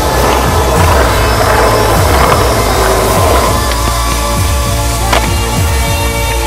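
Music with a steady beat over skateboard wheels rolling on concrete. The rolling is loudest in the first few seconds, and there is a single sharp knock about five seconds in.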